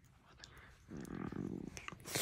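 Dog giving a low play growl during mouth-wrestling with another dog, lasting just under a second starting about a second in, over small clicks of teeth and jaws.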